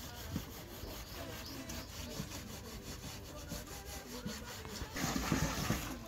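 Yellow plastic jerrycan being scrubbed by hand with a bunch of grass: irregular rubbing and scraping on the plastic, with a louder swish of noise about five seconds in.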